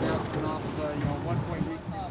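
A person speaking, likely a reporter's question that the recogniser missed, over steady wind noise on the microphone.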